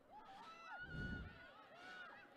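Faint shouts and calls from players on a Gaelic football pitch, heard from a distance. A brief low rumble comes about a second in.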